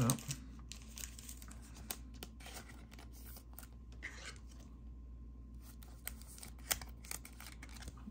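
A trading card being slid into a soft plastic penny sleeve: faint crinkling and scraping of thin plastic, with scattered light clicks of cards and plastic holders handled on a table and one sharper tick near the end.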